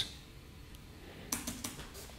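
Quiet room tone, then a few short clicks of a computer keyboard's space bar being pressed in the last second.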